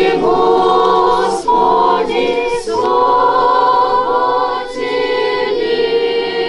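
A girls' choir singing Orthodox liturgical chant a cappella: several voices holding sustained chords in short phrases, with brief breaks between them.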